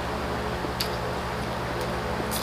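Quiet chewing with a few faint mouth clicks as people eat with their hands, over a steady low hum.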